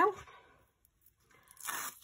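Backing paper being peeled off a strip of double-sided foam tape: a short rasping tear starting about one and a half seconds in, after a brief quiet.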